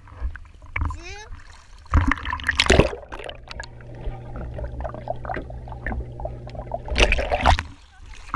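Water splashing and sloshing around a GoPro camera dipped in and out of a swimming pool. There are loud splashes about two seconds in and again about seven seconds in, with a muffled underwater sound between them.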